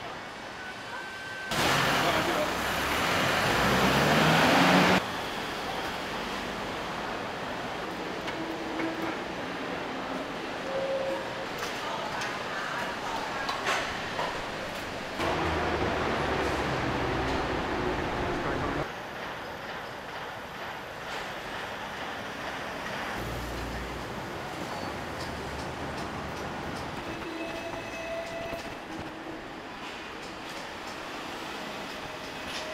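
City street traffic with a murmur of distant voices. A louder vehicle passes from about two seconds in, its engine note rising as it accelerates, and a second loud stretch of traffic comes in the middle; the sound steps up and down abruptly several times.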